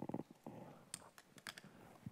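Quiet hall room tone with a few faint, separate clicks and taps in the middle, footsteps on the stage.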